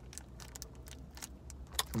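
Chocolate bar wrapper crinkling in quick, irregular crackles as it is peeled open.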